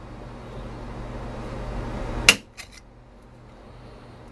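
Handheld hole punch squeezed onto the bottom rim of a thin metal can: a straining noise grows louder for about two seconds, then a sharp metallic snap as the punch bites through, followed by a couple of faint clicks.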